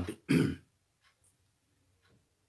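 The tail of a man's speech, then a brief throat clearing.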